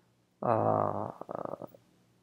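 A man's wordless vocal sound: a drawn-out, low-pitched voiced hum or 'aah' for about half a second, breaking into a short run of quick pulses before it stops.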